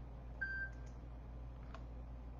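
A single short electronic beep about half a second in, followed by a couple of faint clicks, over a steady low hum.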